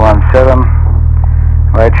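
Steady low drone of a light aircraft's piston engine and propeller running on the ground, heard through the headset intercom, with no change in pitch.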